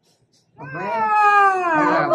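A woman's long drawn-out "aaah" starting about half a second in and slowly falling in pitch, a playful open-mouthed cue for a toddler to feed her the piece of food in his hand.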